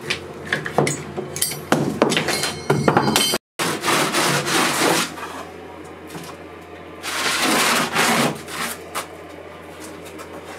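Steel bar clamps being worked and tightened on a surfboard blank, with sharp metallic clinks and brief ringing. After a cut about three and a half seconds in, a wooden sanding block is rubbed over the crumbly mycelium and wood-chip core in long rasping strokes.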